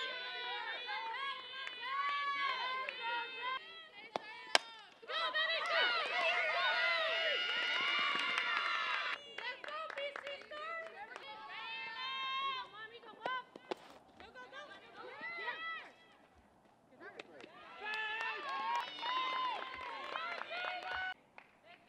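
Several young women's voices shouting and chanting at once, softball players cheering from the dugout, loudest for a few seconds after a single sharp crack about four and a half seconds in.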